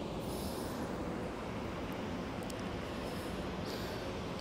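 Steady low background rumble of outdoor ambience, even and without any distinct event, with a faint brief rise of hiss about half a second in and again near the end.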